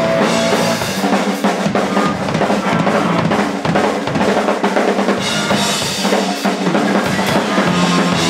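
A rock band playing loud and live: electric guitar over a Yamaha drum kit, with bass drum, snare and cymbals going throughout.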